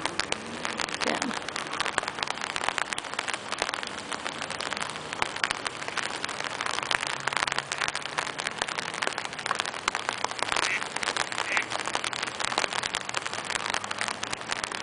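Rain pattering on an umbrella held over the microphone: a dense, steady patter of drop hits throughout.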